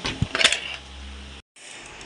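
Stainless-steel dishes clinking a few times in quick succession about half a second in. A little later the sound cuts out for an instant.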